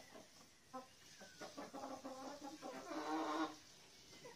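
Hens clucking in a series of short calls, then a louder, longer call about three seconds in.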